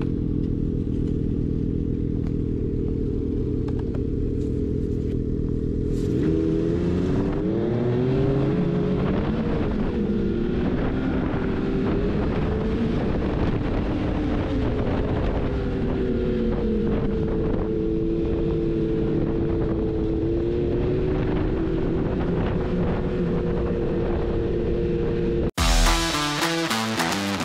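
Snowmobile engine running steadily at low revs, then speeding up about six seconds in, its pitch climbing and then rising and falling as the sled rides on.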